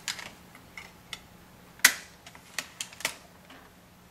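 Small plastic clicks and knocks as a CD is pressed onto the spindle of a ThinkPad laptop's slide-out optical drive tray and the tray is pushed shut. There are about seven sharp, separate clicks, the loudest a little under two seconds in.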